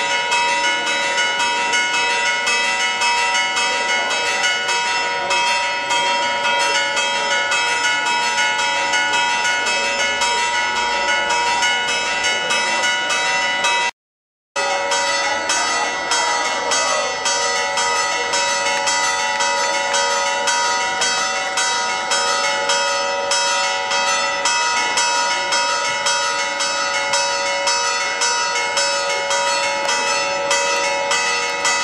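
Church bells pealing in rapid, regular strikes, overlapping into a continuous festive ringing. The sound drops out for about half a second near the middle.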